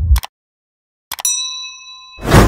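Subscribe-button sound effect: after a short burst of the preceding intro sting cuts off, there is a moment of silence. About a second in come two quick mouse-style clicks, then a bright bell ding that rings on and slowly fades.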